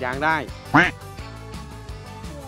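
A voice speaking briefly over background music, then a short, loud, high squeak that sweeps up in pitch about three-quarters of a second in.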